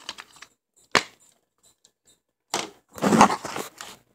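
A plastic DVD case being handled and opened: one sharp click about a second in, then about a second of rustling handling noise near the end.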